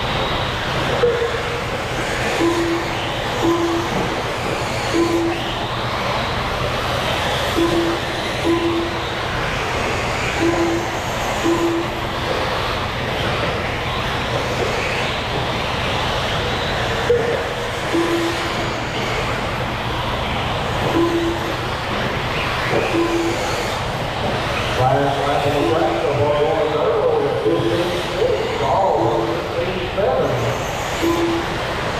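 1/8-scale electric off-road buggies racing on an indoor dirt track: a steady mix of electric motors and tyres on dirt with hall chatter, cut through every second or two by short beeps from the lap-timing system as cars cross the line. Near the end a louder wavering voice-like sound rises over the mix.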